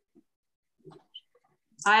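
Mostly near silence with a few faint short clicks, then a person starts speaking near the end.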